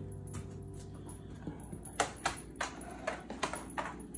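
A Brittany spaniel's claws clicking on a hard floor, about seven sharp, irregular clicks in the second half.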